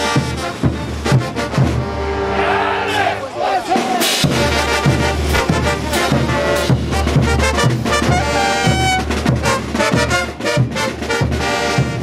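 Bolivian brass band playing a dance tune live: trumpets and trombones over a steady beat of bass drum and cymbals. The low instruments drop out for about two seconds near the start, then the full band comes back in.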